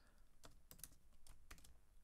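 Faint computer keyboard typing: a string of separate keystrokes, a few a second.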